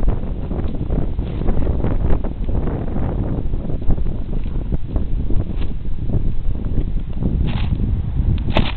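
Wind buffeting the camera microphone: a continuous rough, low rumble that rises and falls irregularly.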